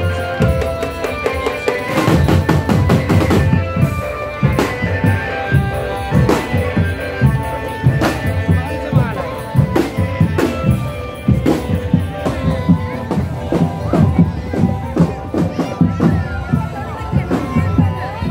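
Marching drum band playing: snare and bass drums beating a fast, steady rhythm, with a melody line over the drums that is strongest in the first few seconds.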